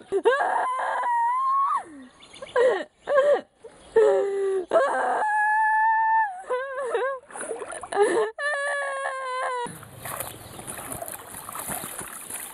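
A woman wailing loudly in long, drawn-out cries broken by sobs, some notes held steady for over a second. Near the end the wailing stops abruptly and a steady rushing noise takes over.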